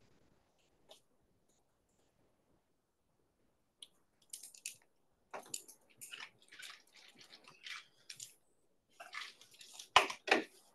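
A run of short, irregular clicks and light scraping noises, starting about four seconds in after a stretch of near silence.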